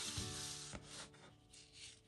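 Paper rustling and sliding as a magazine page is handled and turned, fading out after about a second.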